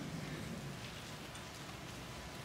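Quiet room tone: a faint, steady hiss with a low hum underneath, and no speech.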